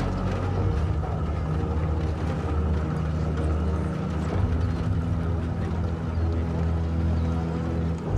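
Low, sustained drone-like music of a documentary score, with held low notes that shift about four seconds in.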